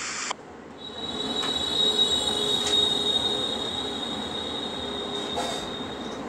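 Railway train with a steady, high-pitched squeal from its wheels on the rails, setting in about a second in.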